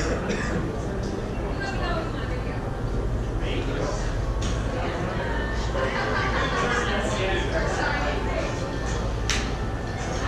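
Indistinct chatter of many voices in a large, busy hall over a steady low hum. About a second before the end comes a single sharp crack: a golf club striking a ball.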